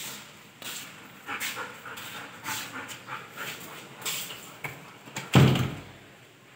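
Golden retriever making a run of short whimpering sounds, then a loud thump near the end as a wooden door is shut.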